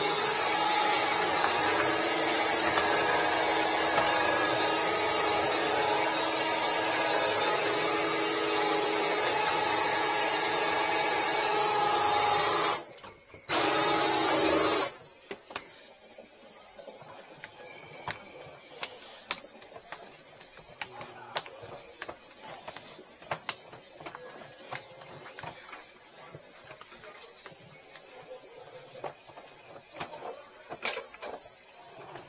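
Power drain snake running, spinning its cable inside a clogged kitchen-sink drain pipe with a steady motor whine. It stops about 13 seconds in, runs again briefly, and shuts off about 15 seconds in, leaving light clicks and knocks as the cable is handled.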